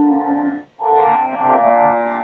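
A woman singing an Indian classical vocal piece, holding long steady notes with a brief break about three-quarters of a second in.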